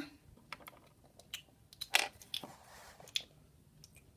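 Scattered light clicks and knocks of plastic toy pony figures and small wooden blocks being picked up and set back down by hand. The loudest knock comes about two seconds in.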